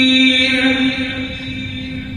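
A male imam's voice reciting the Quran in a drawn-out chant, holding one long steady note that fades away after about half a second and trails off into the mosque's echo.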